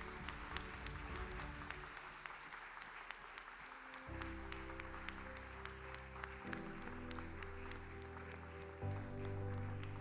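Applause, many hands clapping, with sustained low chords of music coming in about four seconds in and changing chord twice.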